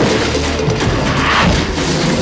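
Loud film-trailer soundtrack: dramatic music mixed with crashing, booming sound effects.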